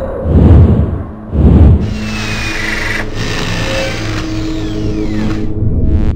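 Logo intro sting of music and sound effects: two deep booming hits in the first two seconds, then a sustained mechanical-sounding drone with a falling sweep in pitch near the end.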